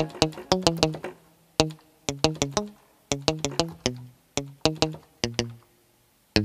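A synthesizer playing short, plucked-sounding notes one after another in an uneven rhythm, with small gaps, and no drums behind them.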